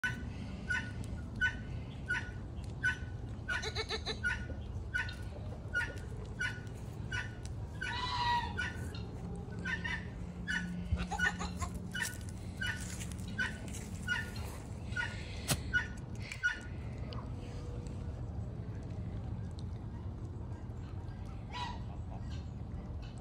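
A bird calling: one short note repeated evenly, about every two-thirds of a second, until about three-quarters of the way through, with a few longer calls among them.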